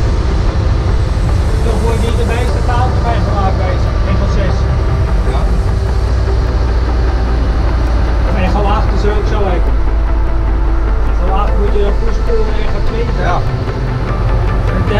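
AM500 pushback tug's engine running with a steady low rumble while pushing an Airbus A330-200 back from the stand.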